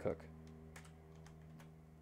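Computer keyboard keys tapped three times as the hotkey B-S-H is typed, faint clicks over a steady low hum.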